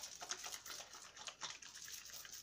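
Faint, irregular wet squishing of soapy hands rubbed together, working homemade liquid soap into a lather.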